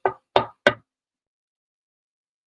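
Three quick knocking taps on a microphone within the first second: a mock "is this thing on?" mic check.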